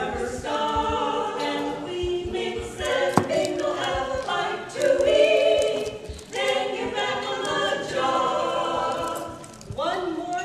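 Women's barbershop quartet singing a cappella in close harmony, holding chords in phrases with short breaks between them.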